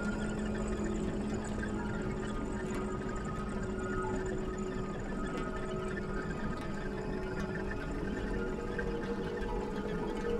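A steady droning hum of several held tones over a hiss, with no beat or strikes.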